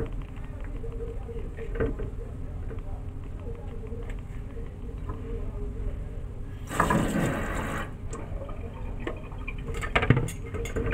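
Hands rubbing and mixing grated coconut, glutinous rice flour and sugar in a bowl, a soft grainy rustle. About seven seconds in comes a brief rush of running water lasting about a second.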